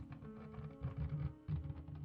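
Dark background music: a few low held tones over soft, uneven low pulses.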